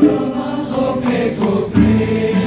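A large crowd singing a song together, accompanied by live acoustic instruments and hand drums, with a drum beat near the end.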